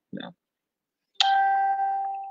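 A single bell-like ding a little over a second in: a sudden strike followed by a clear ringing tone that fades away over about a second.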